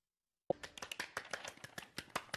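Two people clapping, a quick run of light claps that starts about half a second in after a moment of dead silence.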